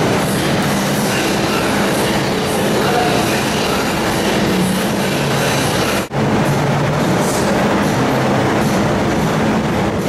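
Steady, loud rushing air noise from a large industrial floor fan running beside the microphone, briefly cutting out about six seconds in.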